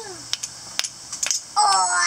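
Flint and steel: a steel striker struck against a flint rock, giving several short sharp clicks. A child's voice comes in near the end.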